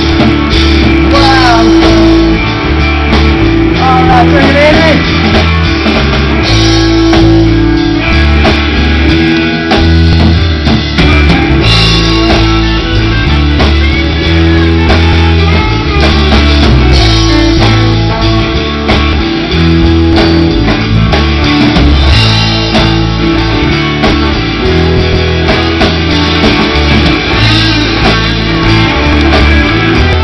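Live rock band playing an instrumental stretch: guitars with a few bent notes near the start, over drums and bass guitar.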